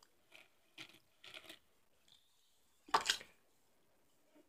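Faint mouth sounds of a jelly bean being chewed, with a short, louder breathy noise about three seconds in.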